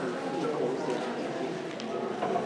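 Steady babble of many people talking at once in a large hall, audience chatter with no single voice standing out.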